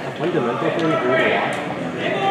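People talking in a large hall, several voices at once, with no other distinct sound.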